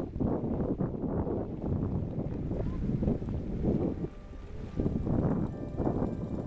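Gusty wind buffeting the microphone in uneven surges, with indistinct voices in the background.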